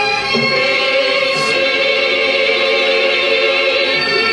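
A crowd of people singing together in unison, with long held notes.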